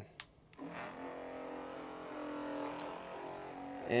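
A switch clicks, then the reverse-osmosis system's electric pump starts about half a second in and runs with a steady hum. It is pumping permeate through the membranes to flush out the last of the concentrated birch sap.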